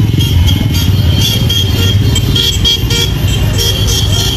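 Motorcycle and car engines running close by in a street caravan, with a rapid low engine pulsing throughout and horns tooting.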